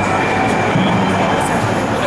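Loud crowd noise from a packed street protest: many voices shouting and chanting together, with low pitched stretches that come and go every second or so.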